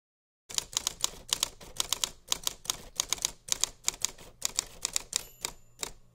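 Typewriter sound effect: manual typewriter keys clacking in quick, uneven strokes, with a short bell ring about five seconds in.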